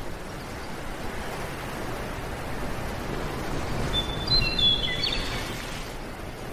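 A steady background hiss, with a few brief high chirps, like a small bird's, about four to five seconds in.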